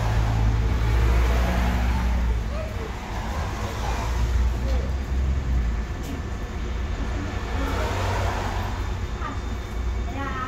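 Low, steady rumble of a city bus engine idling at a stop with its doors open, swelling a little near the start and again about four seconds in, with people's voices over it.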